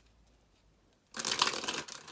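A deck of cards being shuffled by hand: a rapid, crackly flutter of cards starts about a second in and runs on.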